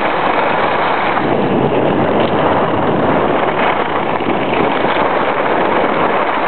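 Wind rushing over a compact camera's microphone while skiing down a groomed run: a loud, steady rush with no break.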